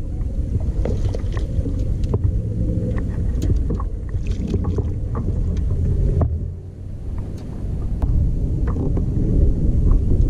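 Wind rumbling on the microphone over a fishing kayak, with scattered light clicks and knocks from the rod, reel and kayak gear.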